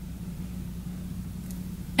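Room tone: a steady low electrical hum with a faint hiss, and a tiny tick about one and a half seconds in.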